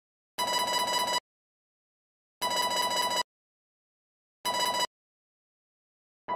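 A harsh electronic ringing tone sounding in three abrupt bursts, the first two about a second long and the last shorter, with dead silence between them.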